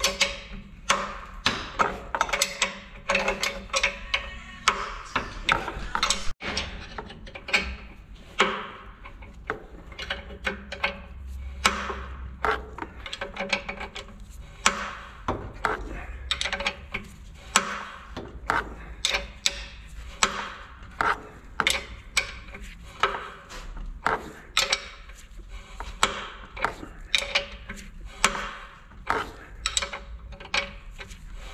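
A spanner being worked on the nut of a threaded-rod bushing puller, pressing a new control-arm bushing into its aluminium housing: a steady run of sharp metallic clicks, a little over one a second, as the nut is turned stroke by stroke.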